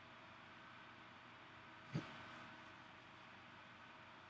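Near silence: faint steady room hiss and hum, with one short, low thump about halfway through.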